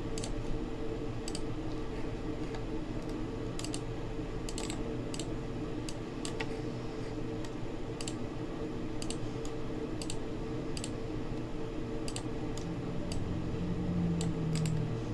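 Scattered, irregular clicks of a computer keyboard and mouse, about one a second, over a steady low electrical hum.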